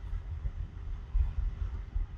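Low, uneven background rumble with a faint steady hum underneath; no speech.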